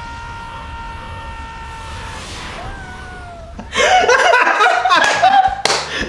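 A movie soundtrack plays a long held high note over a low rumble. About four seconds in, it gives way to a man and a woman bursting into loud laughter.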